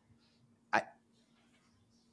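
A pause in a conversation: one short, clipped "I" from a man's voice about three-quarters of a second in. Otherwise only quiet room tone with a faint steady hum.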